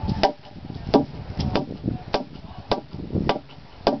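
A mallet strikes a peeled ash log about eight times, the blows coming at uneven intervals of roughly half a second. The pounding loosens the log's growth layers so they can be torn off as strips for basket splints.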